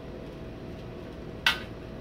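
Low steady background noise with one short, sharp click about one and a half seconds in.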